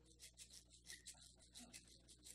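Faint, quick, even shaking of a hand rattle, several soft rattling strokes a second.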